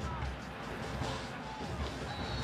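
Steady stadium crowd noise with music playing underneath and faint voices near the start.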